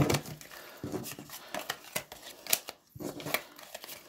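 Playing cards being gathered up off a table and squared into a deck by hand: an irregular run of light taps and slides, with a short pause near the end.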